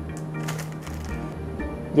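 Background music with steady low notes, and faint crackling of a paper burger wrapper being unfolded by hand.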